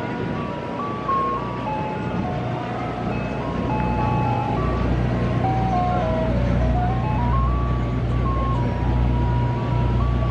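Ice cream truck jingle playing a simple melody one note at a time, over the low steady hum of an idling truck engine that grows louder about four seconds in.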